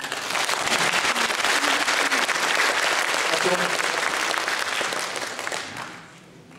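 Concert audience applauding after a song, the clapping fading out near the end.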